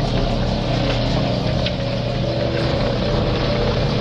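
Cement mixer truck's engine running steadily.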